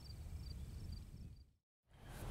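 Faint evening outdoor ambience with crickets chirping in short, high, repeated pulses, fading out to dead silence near the end.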